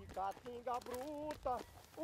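A man singing a slow, plaintive refrain, his voice faint, with a long held note near the middle.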